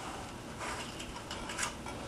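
Faint rustling and a few light ticks as a holster's cord is looped and tied around a trouser belt by hand.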